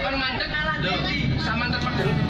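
Voices over the running noise of a bus.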